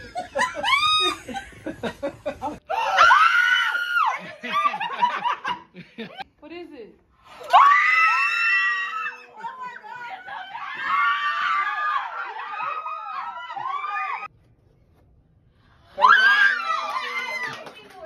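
Excited, high-pitched screams and squeals of surprise from several people, in repeated outbursts with laughter and exclamations between. They break off into a short near-silence near the end, then one more loud scream.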